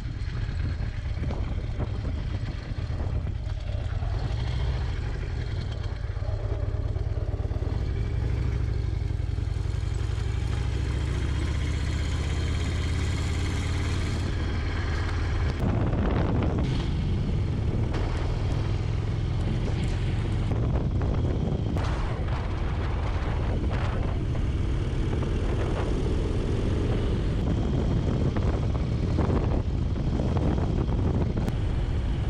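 Harley-Davidson Low Rider S V-twin engine running steadily under way, first over a dirt road and then on pavement. The sound changes about halfway through, with a few short knocks after that.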